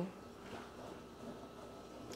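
Frigidaire Gallery FGID2468UF dishwasher running a normal wash cycle: a faint, steady wash noise, not very loud at all.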